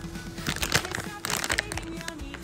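A plastic snack packet crinkling as it is gripped and moved in the hand, in a flurry of sharp crackles in the middle, over a background song with a steady held note.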